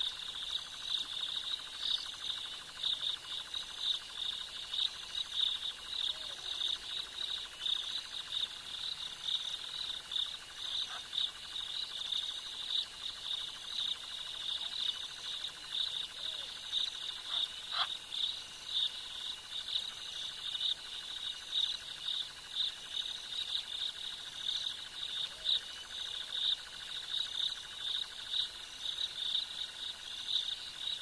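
Steady night chorus of crickets and other insects, a dense pulsing shrill, with a fainter higher chirp repeating about once a second.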